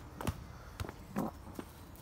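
A few short knocks of a football being kicked and landing, with footsteps on a tarmac path.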